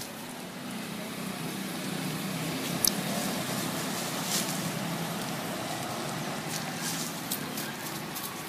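Motorbike engines passing on the road. The low hum swells over the first few seconds and then slowly eases, with a sharp click about three seconds in.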